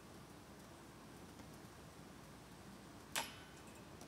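Faint outdoor background, then about three seconds in a single sharp knock: a disc golf putt striking the basket and failing to go in.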